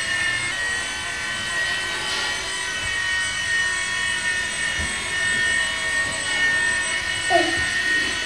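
Blade mSR fixed-pitch micro RC helicopter hovering: a steady high-pitched whine from its small electric motor and spinning rotor.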